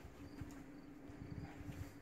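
Faint steady buzzing hum with soft low rumbling bumps underneath, like wind on or handling of the microphone.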